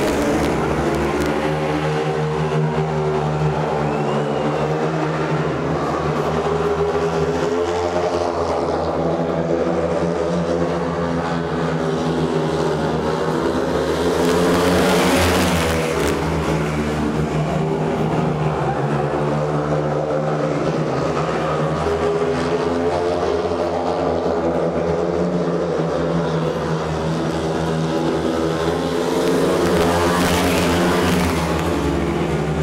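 A pack of four speedway motorcycles racing, their 500 cc single-cylinder methanol engines revving up and down in pitch as they go through the bends and straights. The engines swell loudest about halfway through, as the bikes pass close by.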